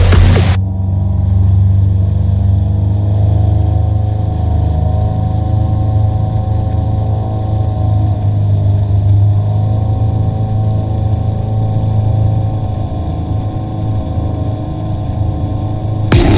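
Glastron ski boat's engine running steadily at speed while pulling a wakeboarder: a steady low drone with little high end, taking over abruptly from music about half a second in.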